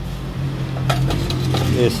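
Glazed ceramic plates clinking against each other as a pasta plate is lifted off a stack: a couple of sharp clinks about a second in and a few more near the end.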